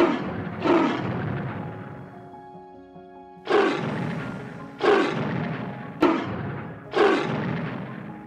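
Animated dinosaur voice: five roar-like calls, each starting suddenly and fading over about a second, standing in for the clay dinosaur's subtitled speech. Soft background music plays under them.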